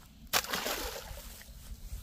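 RC outrigger boat set down onto pond water: a small splash about a third of a second in, then water sloshing that fades away over about a second and a half.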